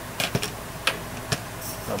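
Several light clicks and taps in the first second and a half as a small electronic speed controller, with its wire leads and plastic connectors, is handled and set down on a table, over a steady low hum.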